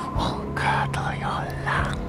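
A man whispering close into the ear of a binaural dummy-head microphone, over a low steady hum.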